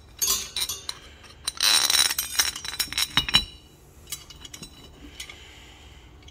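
Metal heater parts clinking and knocking together as they are handled: a rusty steel cover plate and its bolts and threaded rod. The clinks come in clusters in the first half, thickest about two seconds in, then only a few light ticks.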